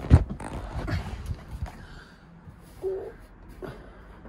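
Knocks and bumps from a handheld camera being moved about in a car interior, the loudest two right at the start, then lighter knocks and rustling. A brief low tone sounds about three seconds in.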